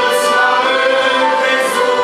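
A small mixed group singing a Christian hymn in harmony, holding long notes, to accordion and flute accompaniment; sung consonants hiss briefly near the start and near the end.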